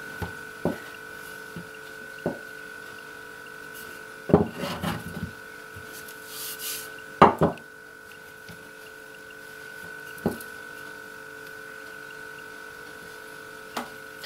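Wooden rolling pin knocking and rolling on a floured wooden board while pizza dough is rolled and pressed by hand: scattered short knocks, the loudest a pair about seven seconds in, over a faint steady hum.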